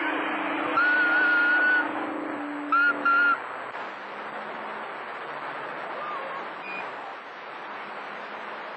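CB radio receiver on channel 28 picking up skip: a hiss of band static, with a low steady tone for the first three seconds, a held whistle about a second in, and two short beeps just before three seconds in.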